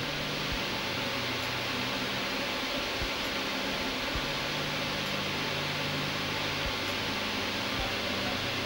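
Steady fan-like hiss with a low hum underneath, and a few faint low thumps.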